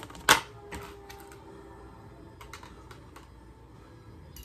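A sharp clink as a glass dish lid is lifted off, with a faint ring after it, followed by a few light clicks and taps of a fork and plastic food containers.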